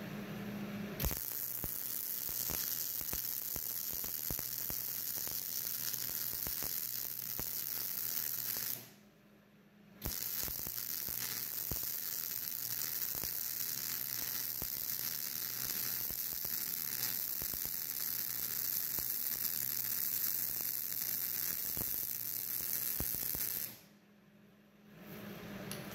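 MIG (GMAW) welding arc on steel, fed with 0.035 in ER70S-6 wire, running with a steady crackle: one bead from about a second in to about nine seconds, a brief stop, then a second, longer bead until just before the end.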